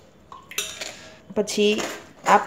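Steel spoon scraping and pressing juice pulp against a stainless-steel mesh strainer, forcing the juice through into a steel bowl. About a second and a half in there is a knock of metal on metal, and the bowl rings briefly.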